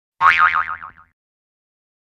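A cartoon 'boing' sound effect: one springy note whose pitch wobbles quickly up and down, fading out within about a second.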